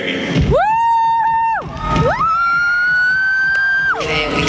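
Two long, high-pitched 'wooo' whoops, the first about a second long and the second nearly two seconds, rising a little before cutting off, over crowd cheering. A single sharp click sounds near the end.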